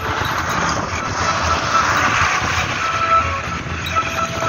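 Steady engine and road noise of a moving vehicle heard from inside, a low rumble with a rushing hiss over it.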